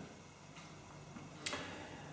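A pause in speech: faint room tone with a single short, sharp click about one and a half seconds in.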